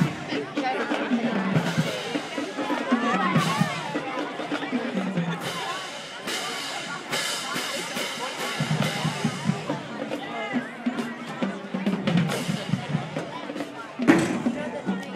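Marching band playing with drums and brass, mixed with the talk and shouts of a crowd in the stands.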